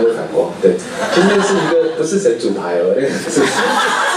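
A man talking into a microphone, with chuckling.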